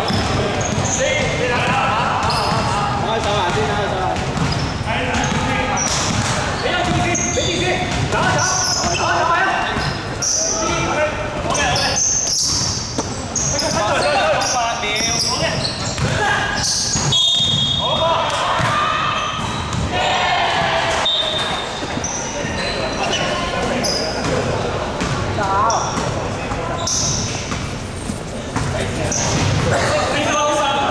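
Indoor basketball game: a basketball dribbled and bouncing on a wooden court, with people's voices throughout, all echoing in a large hall.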